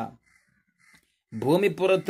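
A man lecturing: his voice breaks off, there is a near-silent pause of about a second, and he starts speaking again about a second and a half in, his pitch rising.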